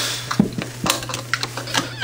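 A few light, scattered clicks and knocks of objects being handled on a desk, over a steady low hum.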